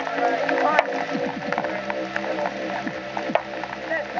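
People's voices talking over background music, with scattered small clicks.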